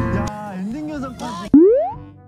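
Background music cuts off and a short, wavering voice-like sound follows. About one and a half seconds in, a comedic 'boing' sound effect jumps in: a sudden, loud rising glide in pitch that quickly fades.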